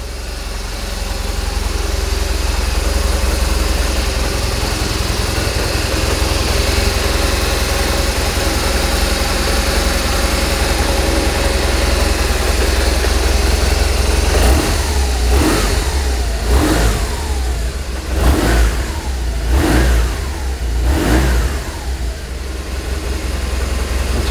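2007 BMW R1200RT's 1170 cc air/oil-cooled boxer twin idling steadily, then revved in about five short throttle blips, one every second and a half or so, over the last ten seconds. It sounds sweet.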